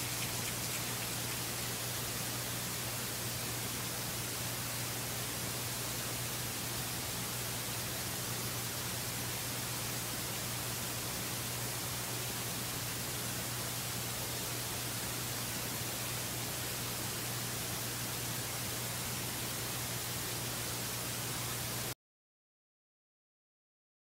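Steady hiss with a low, even hum: a recording's noise floor, with no voices or distinct sounds.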